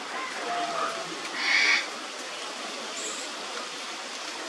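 A single short, loud call from a bird about one and a half seconds in, over a steady outdoor background hiss.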